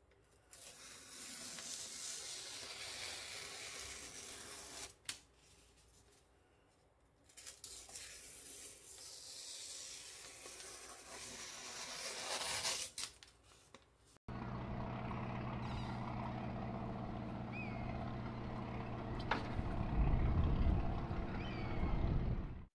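A sashimi knife blade slicing through newspaper in a sharpness test, the paper rustling and hissing in two long stretches with a few sharp crackles. About fourteen seconds in it cuts off abruptly and a steady low engine drone takes over, with a couple of short chirps and a loudening rumble near the end.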